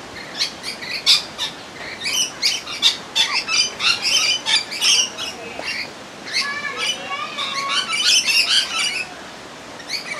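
Little corella calling: a rapid run of short, high squawks and chirps, then a longer stretch of warbling chatter with rising and falling pitch a little past the middle, easing off near the end.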